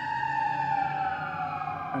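Emergency vehicle siren wailing, its pitch falling slowly.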